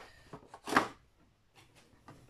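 A short rustling scrape of small objects being handled, with a few faint clicks before it.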